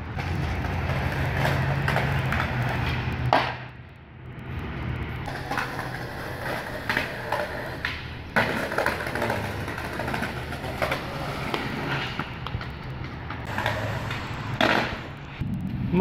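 Skateboard wheels rolling over rough asphalt, with several sharp clacks of the board slapping the ground as tricks are popped and landed.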